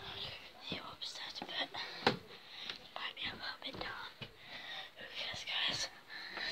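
A child whispering throughout, with sharp knocks in between; the loudest comes about two seconds in.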